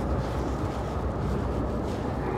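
Steady low rumble of the boat's twin Volvo Penta D6 diesel engines idling, with a light, even hiss above it.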